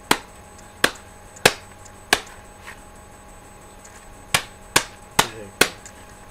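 Eight sharp knocks or slaps, one group of four in the first two seconds and another quicker group of four near the end, each short and crisp.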